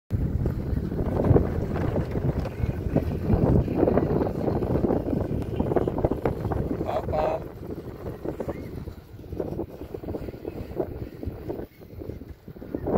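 Wind buffeting the microphone on an open, moving chairlift, a heavy low rumble that eases off after about seven seconds. There is a short, higher pitched sound about seven seconds in.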